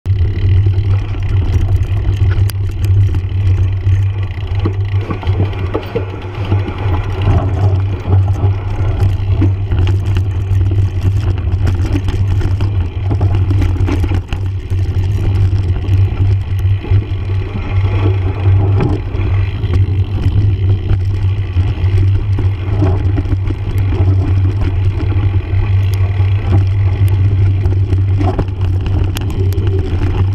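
Mountain bike rolling down a gravel and dirt trail: knobby tyre noise with frequent rattles and knocks from the bike over the rough surface, under a steady low rumble of wind on the bike-mounted camera's microphone.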